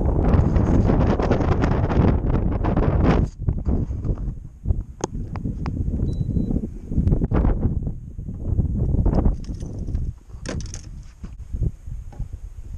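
Wind buffeting the microphone in gusts, heaviest in the first three seconds and then coming and going, with a few sharp knocks.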